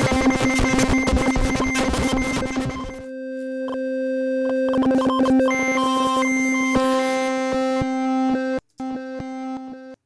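Teenage Engineering OP-1 synthesizer holding a note while its Random LFO modulates a synth parameter at full amount. For the first three seconds it is a chaotic jumble of rapid clicks, then it settles into a steady held note whose upper overtones jump from step to step. It cuts out briefly about a second before the end.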